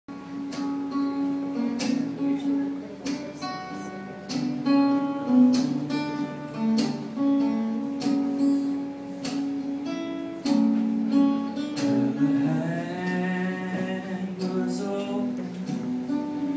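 Acoustic guitar played live, picked notes and strums in a steady pattern. About three-quarters of the way through, a man's voice comes in singing over the guitar.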